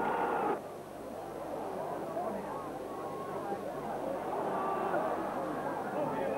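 Football stadium crowd noise: a louder crowd sound cuts down suddenly about half a second in, leaving a steady murmur of many crowd voices.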